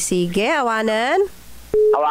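A voice on a phone-in call drawing out one long gliding vowel, then after a short pause a steady telephone tone starts abruptly near the end, like a busy signal on the line.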